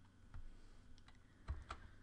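A few faint, separate keystrokes on a computer keyboard as a spreadsheet formula is typed.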